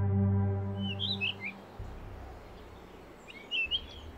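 A sustained low music chord fades out over the first second and a half. Birds then chirp over a faint outdoor background, in a short flurry about a second in and again near the end.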